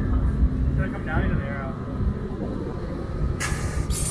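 Nissan 350Z's V6 engine running at low speed with a steady low rumble as the car crawls past. Near the end a short, sharp hiss of air cuts in for about half a second.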